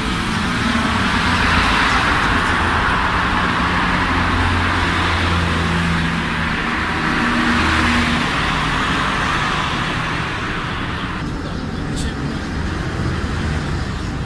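Street traffic noise: a steady rush of passing road vehicles with a low engine hum, loudest in the middle and easing off slightly near the end.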